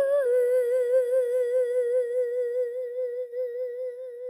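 Song soundtrack: a singer holds one long, high final note with an even vibrato, slowly growing quieter.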